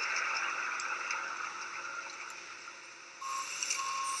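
Construction-site background noise from the played video: a steady hiss that fades away. About three seconds in, after a cut to a concrete mixer truck discharging, the noise returns louder with a few short, high, even-pitched beeps.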